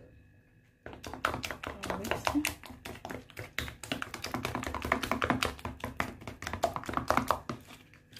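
Metal spoon stirring a thick paste of herb powder and oils in a plastic tub, a rapid run of clicks and scrapes against the tub that starts about a second in and eases off near the end.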